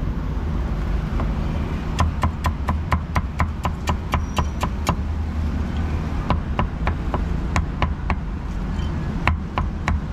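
Cleaver chopping cooked pork on a chopping board: quick runs of sharp knocks, about four or five a second, with a short pause around the middle, over a steady low rumble.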